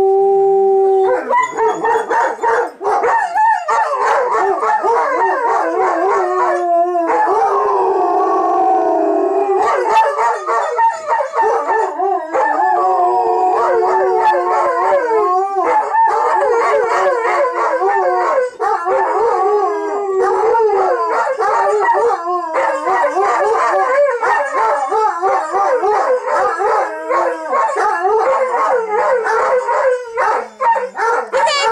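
Two dogs howling together, a Bernese mountain dog/shepherd mix among them. One holds a steady howl; about a second in the other joins, and their wavering, overlapping howls run on with only a few brief gaps.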